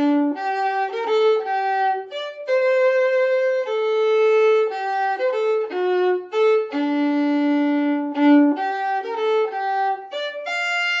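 Solo violin played with the bow: a film-music tune of separate notes, some held for about a second, with a long low note about seven seconds in.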